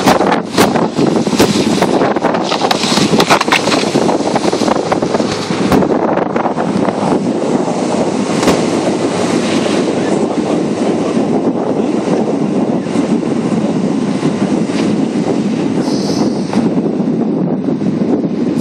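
Steady rushing noise of wind on the microphone and car tyres rolling over a packed-snow road, from a camera held out of the window of a moving car, with a few sharp clicks.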